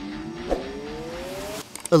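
A synthetic tone sweeping steadily upward in pitch over background music, a transition riser that cuts off abruptly shortly before the end, with a single short click about half a second in.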